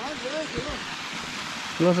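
Small hill stream cascading over rocks, a steady rushing splash, with faint voices behind it and a man starting to speak near the end.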